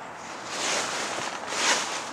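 Rushing, rustling noise on the camera's microphone as the camera is swung around. It swells about half a second in and again, loudest, near the end.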